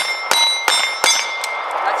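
Semi-automatic pistols fired rapidly together, about three shots a third of a second apart, each leaving a high ringing tone; the firing stops about halfway through as the magazine dump ends.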